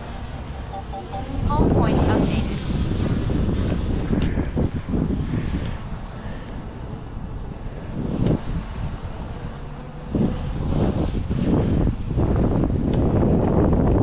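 Gusty wind buffeting the microphone in uneven swells, while a small quadcopter drone lifts off from the ground a few metres away.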